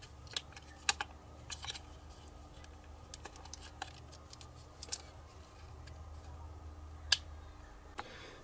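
Scattered small clicks and taps of 18650 lithium-ion cells being pulled out of and pushed into a plastic battery holder with spring contacts, one sharper click near the end, over a faint low hum.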